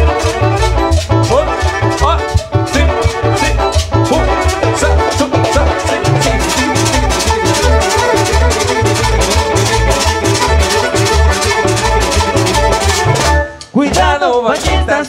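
Live chanchona band playing an instrumental cumbia passage: violins over bass, drum kit and timbales with an even dance beat. Near the end the music drops out for a moment.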